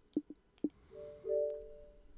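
A few soft clicks from menu navigation, then about a second in a short two-note chime of a media-centre interface sound, the second note higher and longer than the first.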